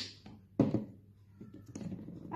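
A plastic flip-top bottle cap snapping shut, then a louder thunk about half a second later as the bottle is set down on a tabletop, with small handling clicks near the end.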